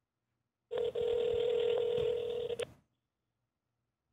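Telephone ringback tone heard over a phone line on speaker: one steady ring about two seconds long, starting just under a second in, the sign that the called phone is ringing and not yet answered.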